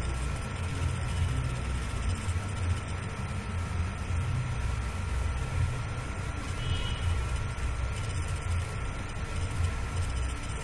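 Steady low background rumble with a faint constant high tone running through it.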